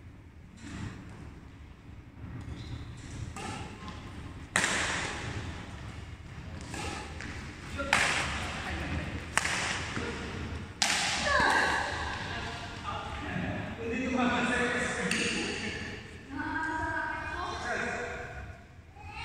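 Badminton racket strings striking a shuttlecock in a rally, a series of sharp smacks about a second and a half apart that echo in the hall. Players' voices follow near the end, after the rally stops.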